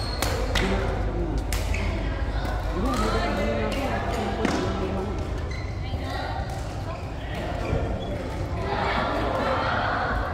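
Badminton rackets hitting a shuttlecock in a doubles rally: several sharp hits, one with an overhead smash at the very start, with people talking nearby in a large hall.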